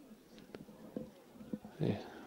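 Open-air sound of a football match in play: a few sharp knocks of the ball being kicked, then a short, loud shout from a player near the end.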